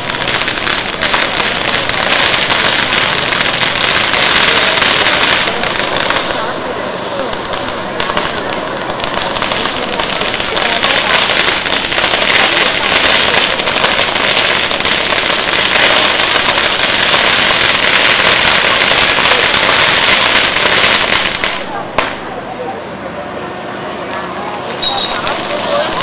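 Ground firecrackers going off in a rapid, continuous crackle, easing off a couple of seconds before the end.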